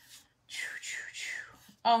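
A woman whispering a few words under her breath for about a second, then speaking aloud near the end.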